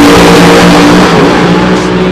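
Nitro-fuelled drag racing cars, a dragster and a funny car, running at full throttle down the strip. The engine note is very loud and steady and eases slightly in the second second.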